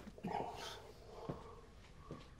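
A man's voice holding one long, drawn-out 'I' on a steady pitch, the start of a mocking imitation of the line just shouted at him.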